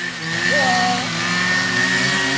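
Small engine of a handheld garden power tool running steadily at a constant pitch, growing louder over the first half second.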